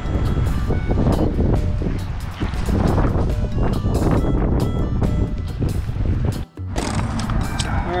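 Strong wind buffeting the microphone, a loud rumble with music running underneath. The sound drops out for a moment about six and a half seconds in.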